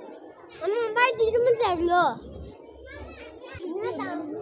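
A young child's high-pitched voice, loud and sing-song for about a second and a half near the start, followed by quieter voices.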